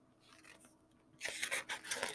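Paper pages of a large picture book rustling and crackling as a page is turned over, starting about a second in after a brief near-silence.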